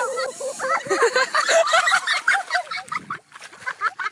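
Excited voices laughing and shrieking in rapid bursts, with a short lull about three seconds in.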